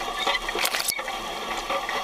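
Scraping and crackling of dry soil and crop residue under an animal-drawn inline subsoiler and its rolling basket as it is pulled through the field, with a sharp click about a second in.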